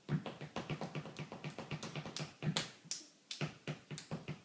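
A fast, uneven run of light, sharp claps, several a second, typical of a baby clapping his hands.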